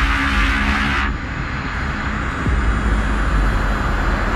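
Intro sound design for an animated logo sting: a deep bass rumble under a loud whoosh of noise that cuts off about a second in, followed by a faint, slowly rising high tone.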